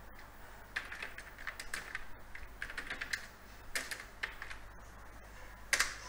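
Typing on a computer keyboard: an irregular run of light key clicks, with one louder click shortly before the end.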